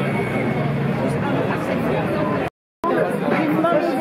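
Crowd chatter: many people talking over each other at once, broken by a sudden silent gap of about a third of a second a little past halfway.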